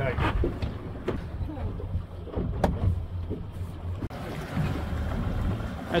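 Fishing boat's engine running steadily with wind on the microphone, a couple of sharp knocks about a second and two and a half seconds in, and faint voices.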